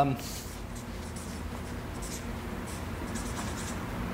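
Marker writing on flip-chart paper: a series of short, faint scratchy strokes, over a low steady hum.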